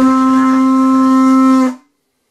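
Large curved animal horn blown like a horn instrument: one loud, steady note that cuts off after nearly two seconds.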